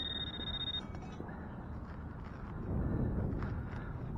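A metal detector's steady, high-pitched target tone lasting under a second at the start, marking a buried metal target. Then soft scraping as a digging knife cuts into grass turf.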